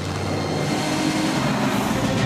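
Cartoon vehicle-engine sound effect of a truck driving along, getting a little louder.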